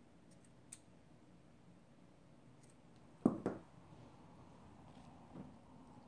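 Scissors cutting ribbon: a few faint small snips in the first seconds, then a sharp double knock a little past three seconds in.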